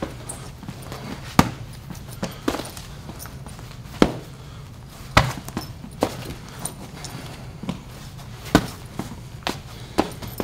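Boxing-glove punches landing on a guard held up with gloves and forearms: about nine sharp strikes at an uneven pace, roughly a second apart.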